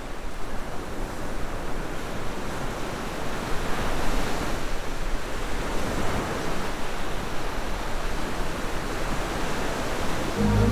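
Sea waves breaking on a rocky shore: a steady rushing of surf that swells louder about four seconds in.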